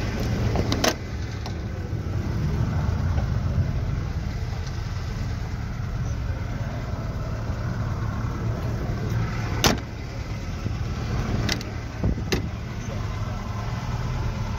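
A car engine idling steadily, with a few sharp clicks and knocks scattered through it.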